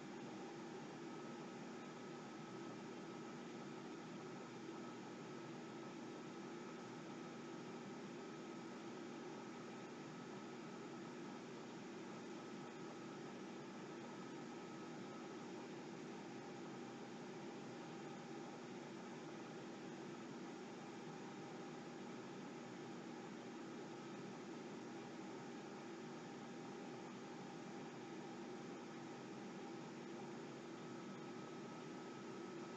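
Steady low hiss of room tone and recording noise, with a few faint steady hum tones underneath and no distinct event.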